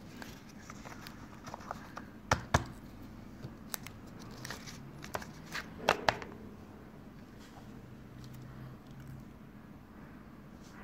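Handling noise of a smartphone unboxing: scattered sharp clicks and knocks of the phone and its cardboard box and paper insert being handled, with light rustling. The loudest knocks come in pairs, about two and a half seconds in and again about six seconds in.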